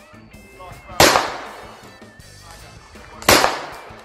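Two shots from a blank-firing replica Colt Single Action Army revolver loaded with .380 blanks, a little over two seconds apart, each a sharp crack with a short decaying tail, over faint background music.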